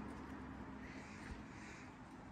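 Two faint, harsh bird calls, one a little under a second in and one soon after, over a low steady hum.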